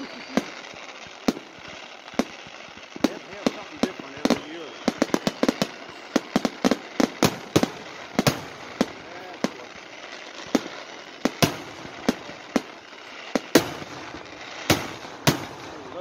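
Aerial fireworks going off: an irregular string of sharp bangs and pops, bunching into a rapid crackling run about five seconds in, with the loudest reports in the second half.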